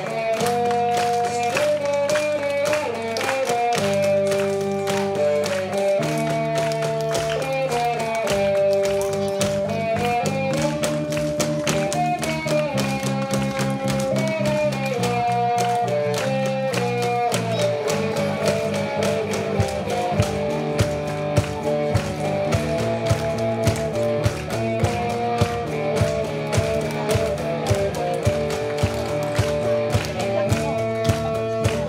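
Small live band playing an instrumental rock and roll number on guitar and bass, a plucked melody over chords. Sharp percussion beats join about two-thirds of the way in, roughly two a second.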